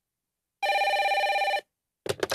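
Telephone ringing: one ring about a second long with a fast trill, starting about half a second in. It is the incoming call that opens the recorded phone conversation.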